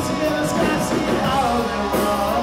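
Live rock band playing: distorted electric guitars, bass guitar and drums with cymbal hits, with a man singing over them.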